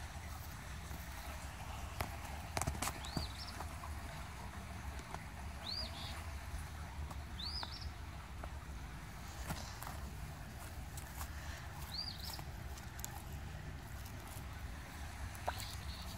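A bird giving short, high chirps: about four single notes a few seconds apart, over a low steady rumble with a few scattered clicks and rustles.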